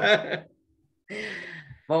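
A person's laughter tailing off, then, after a short pause, a breathy sigh-like exhale lasting under a second.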